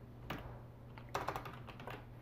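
Typing on a computer keyboard to enter a web address: one keystroke, then a quick run of keystrokes about a second in.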